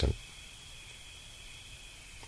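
Crickets chirring steadily, a high even trill, over a faint low hum.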